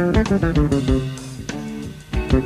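Electric bass guitar playing a melodic funk line, with some notes sliding in pitch, over a drum kit and electric guitar in a live band.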